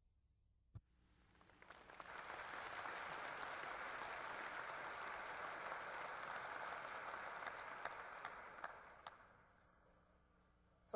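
Large audience applauding in a hall, swelling in over a second or so, holding steady, then dying away near the end. A single sharp click comes just before the applause starts.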